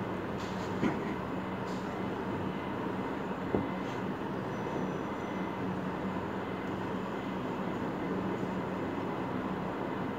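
Steady background hiss with a constant low electrical hum from a small built-in microphone, broken by two short light clicks, about a second in and again about three and a half seconds in.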